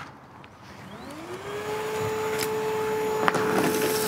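Milwaukee M18 FUEL 3-in-1 cordless backpack vacuum (0885-20) starting up: its motor whine rises in pitch about a second in and settles into a steady tone as the suction builds. A couple of sharp ticks and a growing rush of air follow as the floor nozzle sucks up sand, stone dust and cigarette butts.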